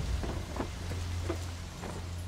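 Dark, low, steady drone under an even rain-like hiss, with a few faint ticks: an ominous sound-design bed for a dust-choked disaster scene.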